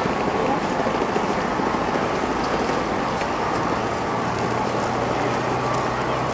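Steady busy city-street ambience: a constant wash of many overlapping voices from passers-by, with faint traffic noise under it.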